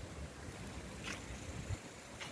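Low, uneven wind rumble on a phone microphone outdoors, with a faint brief rustle about a second in.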